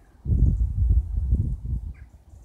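Wind buffeting a phone's microphone: a gusting low rumble that starts about a quarter second in and dies down near the end.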